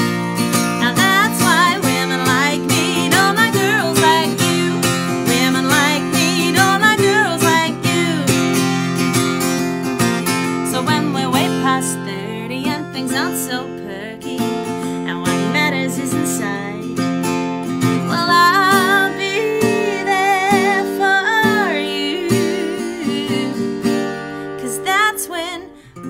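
A woman singing a country song to her own strummed acoustic guitar, with held notes about two-thirds of the way through; the playing eases off near the end.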